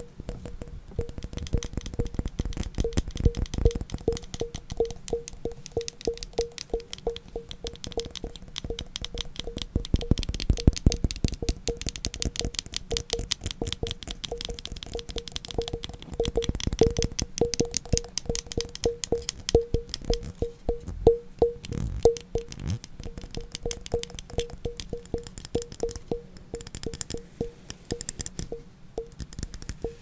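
Layered ASMR tapping and scratching on objects: a dense stream of rapid fingertip taps and scratches, with a short ringing tap at one pitch recurring about twice a second.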